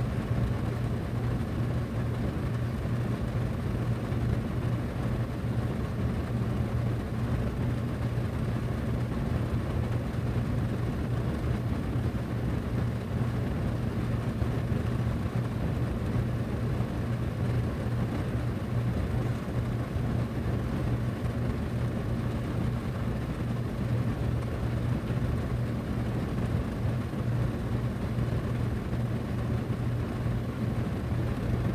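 Miller packaged air conditioner running, heard through a duct register: a steady rush of moving air over a constant low hum from the unit's motors.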